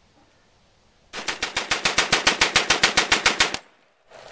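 M3 'grease gun' submachine gun firing one full-auto burst of .45 ACP, starting about a second in and lasting about two and a half seconds. The shots come evenly at roughly nine a second, the gun's characteristically slow rate of fire.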